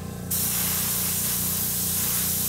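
Airbrush spraying paint in a steady hiss, which starts about a third of a second in after a brief pause of the trigger.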